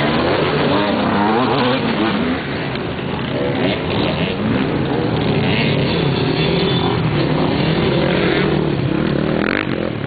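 Several off-road motorcycle engines revving on a dirt motocross course. Their pitches keep rising and falling and overlap one another.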